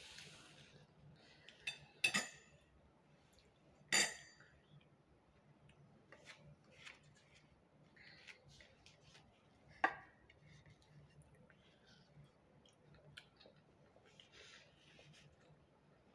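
Quiet eating sounds at a table: sharp clinks of tableware, loudest three times, about two, four and ten seconds in, among soft clicks and rustles as flatbread is handled and torn.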